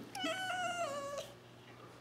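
A domestic cat's single meow, about a second long, sliding slightly down in pitch toward its end.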